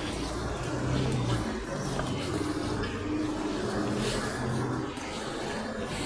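Busy city street ambience: a steady wash of traffic noise and passers-by, with a low hum that swells about a second in and again around three seconds in.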